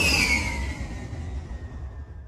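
Outro sound effect: a whoosh with a low rumble and a whistle-like tone that slides down in pitch and then holds, the whole sound fading away.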